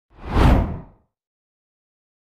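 A single whoosh sound effect in the first second, swelling and then fading away.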